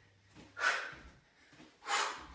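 Two sharp, hissing exhalations, about a second apart, breathed out forcefully by a woman on each twist of a squatting cardio exercise.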